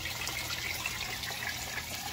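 Steady stream of water pouring from a pipe and valve into a fish tank, splashing onto the surface and churning up bubbles.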